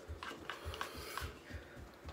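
Faint rustling with a few light clicks and scrapes of small objects being handled at a table.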